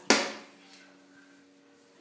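A single sharp knock or clack with a short ring-out, followed by quiet room tone with a faint steady hum.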